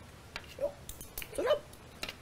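Cutlery clicking against plates during a meal, with two brief rising vocal calls, the second about a second and a half in and the louder.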